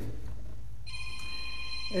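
A steady electronic tone, several high pitches sounding together, starts suddenly about a second in, over a low steady hum.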